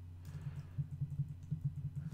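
Typing on a computer keyboard: a run of light, quick keystrokes over a steady low hum.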